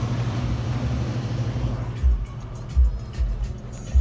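2010 Scion tC's 2.4-litre four-cylinder engine idling steadily, with a few low thumps in the second half.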